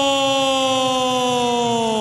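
A ring announcer's voice holding the last vowel of a wrestler's name in one long, loud call, its pitch slowly falling.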